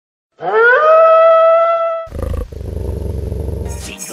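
A wolf howl sound effect: one long call that rises in pitch and then holds steady for about a second and a half, followed by a low, rough growl that lasts until near the end.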